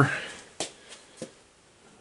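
Quiet room tone as a man's voice trails off, with two faint clicks, the first about half a second in and a smaller one about a second in.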